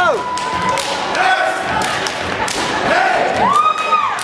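Steppers stomping their feet and slapping their hands and bodies in a step routine on a wooden stage, a run of sharp thuds and smacks. Audience whoops and shouts ride over the beats.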